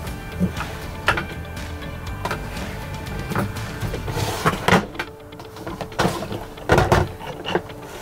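Plastic clicks, knocks and a short sliding scrape from a new Thetford toilet cassette being handled, its handle pushed, clipped in and folded back, with two louder knocks in the second half.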